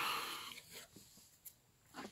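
Mostly quiet: a faint breath as speech tails off, then a single faint tick about one and a half seconds in.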